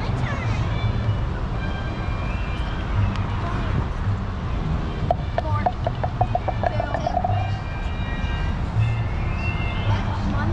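Mini golf putters tapping golf balls on artificial turf, a few sharp clicks over a steady low rumble of outdoor background noise.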